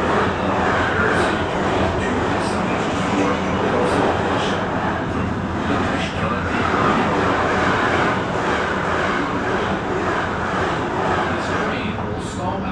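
Train running along the track while a freight train passes on the adjacent line: a loud, steady rumbling rush of wheels and passing wagons, with a few faint clicks.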